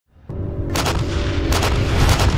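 Heavy gun blasts, two sharp ones about three-quarters of a second apart, over a loud, steady low rumble, with a sustained musical chord under them as the sound comes up from silence.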